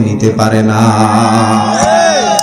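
A man's voice holding one long chanted note into a microphone over a loudspeaker system, steady in pitch. A few sliding tones come in near the end.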